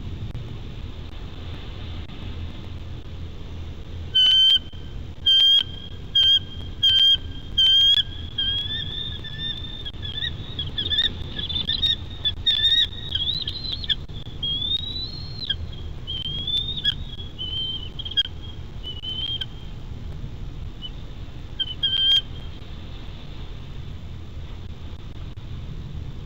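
Bald eagle calling in a series of high, piercing chirps. Five loud separate calls come about a second apart from about four seconds in, then a quicker run of chittering calls, then a few scattered chirps near the end. A steady low wind rumble lies underneath.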